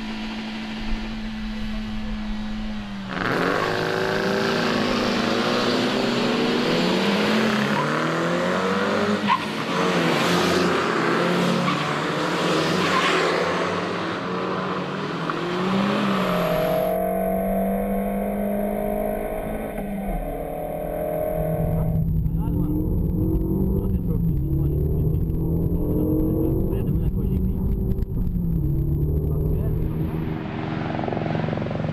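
Renault Mégane R.S.'s turbocharged four-cylinder engine running hard on a racetrack, its pitch climbing and dropping with throttle and gear changes. The sound changes abruptly a few times as separate passes are cut together.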